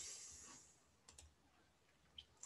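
Two faint computer mouse clicks close together about a second in, over near silence.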